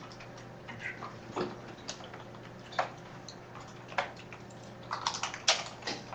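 Scattered taps on a laptop keyboard, a few single clicks with a quicker run of keystrokes near the end.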